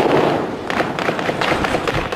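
An explosion in war footage: a sudden loud burst of noise, followed by a string of sharp cracks.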